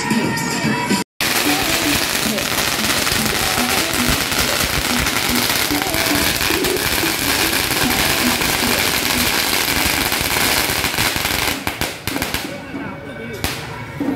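A long string of firecrackers going off in a dense, continuous rapid crackle for about ten seconds, ending about twelve seconds in, followed by one last single bang.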